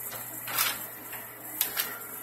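Steady hiss of water, as of a toilet tank refilling through its fill valve, with a couple of short clicks.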